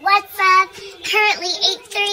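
A high-pitched voice in a sing-song delivery, several drawn-out syllables halfway between speaking and singing; only voice, no music.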